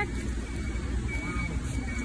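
Steady low rumble of city traffic, with faint distant voices and a brief thin high tone near the middle.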